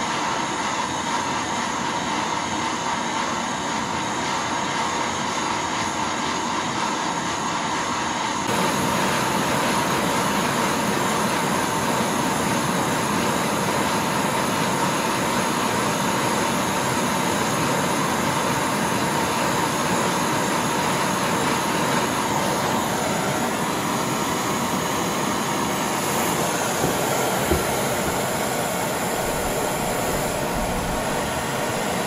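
Handheld gas blow torch running with a steady roar of flame, heating a steel rod to red hot before an oil quench to harden it. About eight seconds in, the roar gets a little louder and fuller.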